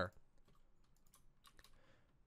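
Faint computer keyboard clicks, a few scattered taps.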